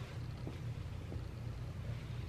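A steady low rumble, with faint rustling of plaid fabric as it is folded and lifted.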